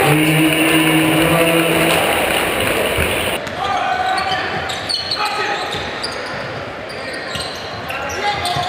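Basketball game sound in a gym: crowd noise, sneakers squeaking and a ball bouncing on the hardwood court. A low steady horn-like tone sounds for about the first two seconds, and the sound changes abruptly a little past three seconds in.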